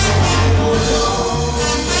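A live salsa band playing, with electric bass, drum kit and congas in the mix.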